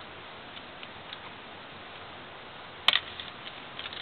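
Plastic Lego bricks clicking as the lock piece at the back of a Lego safe is pulled. There are a few faint ticks, then one sharp click about three seconds in, over a steady hiss.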